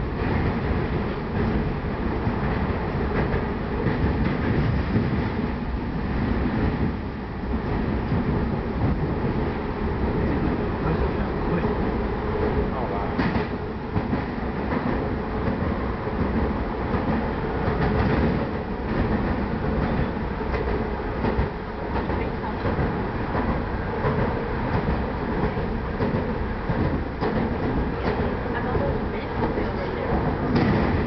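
Budd-built PATCO rapid-transit car running at speed, heard from inside: a steady rumble of wheels on rail with occasional sharp clicks.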